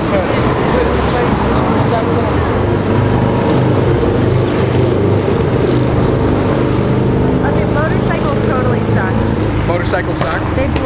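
Loud city street noise: a steady low drone like a large vehicle engine running, with traffic and other people's voices, heavy enough to overload the boom-mic recording.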